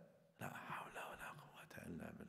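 A man speaking softly and breathily, close to a whisper, starting with a hesitant "uh" about half a second in.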